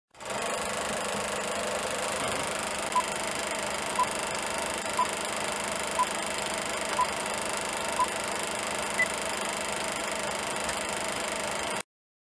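Old-film countdown leader sound effect: a steady film-projector whir and rattle with a short beep each second, six at one pitch followed by one higher final beep. It cuts off suddenly near the end.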